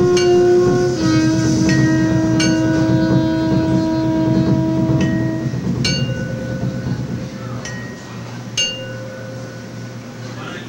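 Free-jazz saxophone holding a long note that drops a little about a second in and fades out after about five seconds, over busy rolling drums. A few sharp strikes with a metallic ring cut through, and the playing thins out toward the end.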